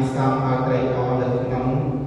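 Buddhist monks chanting, male voices held on a steady low pitch with short breaks between phrases.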